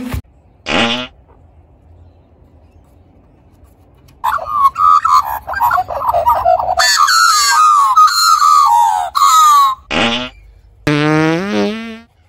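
Australian magpies carolling, a loud warbling song of many gliding notes that starts about four seconds in and lasts some five seconds. A short fart sound comes about a second in, and more fart sounds come near the end.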